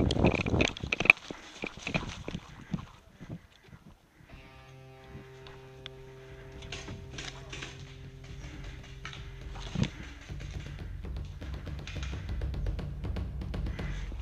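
A run of sharp clicks and knocks over the first three seconds or so. Then background music comes in: a steady held chord from about four seconds in, followed by a low rumble that swells toward the end.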